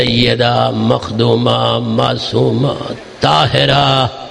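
A man's voice chanting a recitation into a microphone in long lines held on a nearly steady pitch, with short breaks about a second in and near three seconds.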